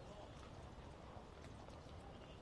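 Near silence: faint background ambience with a few soft taps.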